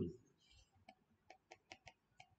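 A few faint, short clicks, about five of them in quick succession during the second half, over otherwise near silence.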